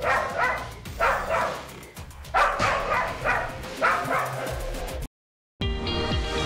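A dog barking in alarm, about eight short barks that come mostly in quick pairs, over background music. The barks stop about five seconds in, and after a brief dropout electronic music starts.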